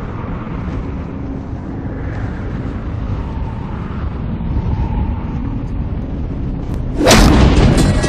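Cinematic soundtrack: a dark, low rumbling drone with a faint held tone, then a loud sudden boom near the end that rings on as the music swells.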